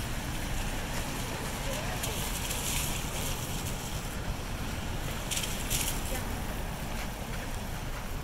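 City street traffic on a rain-wet road: a steady rumble with wind buffeting the microphone, and the hiss of car tyres on the wet pavement swelling twice, about three and about five and a half seconds in.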